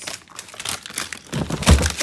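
Plastic food packaging rustling and crinkling as packets are handled in a freezer drawer, with a dull thump near the end.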